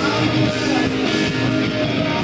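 Live rock band playing, led by an electric guitar.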